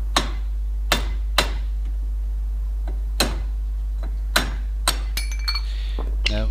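Hammer tapping a tool against the metal grease cap at the centre of a rear brake-drum hub to knock it off: about six sharp metallic strikes at uneven intervals, then a few lighter ringing clinks near the end.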